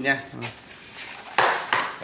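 A steel tape measure's blade being pulled out of its case, a sudden short metallic rasp about one and a half seconds in that fades within half a second.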